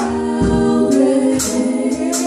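Gospel vocal group of women singing in harmony through handheld microphones, unaccompanied, holding long notes that change pitch about a second in.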